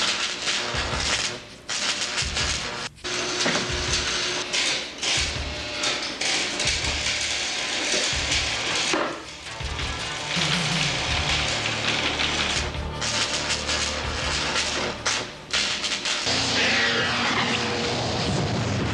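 Film soundtrack music mixed with dense, noisy electronic sci-fi effects, broken by several sudden dropouts. Falling sweeps come in near the end.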